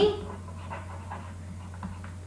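The last word of a spoken phrase trails off, then a low, steady electrical hum carries on under faint breathing.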